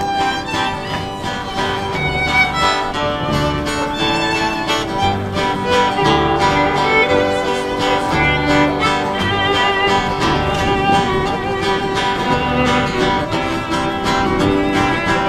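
Instrumental fiddle break: a fiddle carries the melody over strummed acoustic guitar and walking upright bass notes, with no singing.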